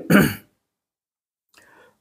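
A man's short breathy sigh, falling in pitch, at the very start, followed by a pause.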